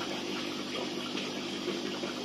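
Steady trickling and rushing water with a low pump hum, typical of aquarium filtration running in a fish room.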